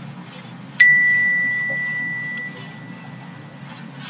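A single bell-like ding about a second in: one high, pure tone that starts sharply and fades away over about two seconds.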